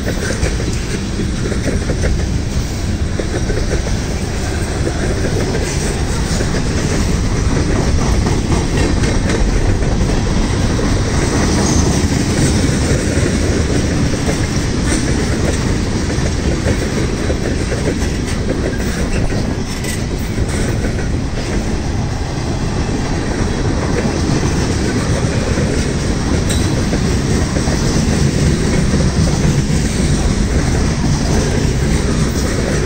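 Freight train cars rolling past close by, tank cars, autoracks and boxcars: a loud, steady rumble of steel wheels on rail, with scattered clicks as the wheels cross rail joints.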